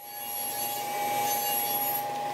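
Table saw ripping a sheet of prefinished maple plywood lengthwise. The cutting noise builds over the first half-second and then holds steady, with a constant whine running through it.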